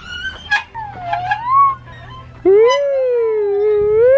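A high-pitched call that rises about a second in, then a loud, long, steady call held for nearly two seconds near the end.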